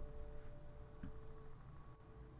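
Faint room tone: a low steady hum with a few thin steady tones, and a single faint click about a second in.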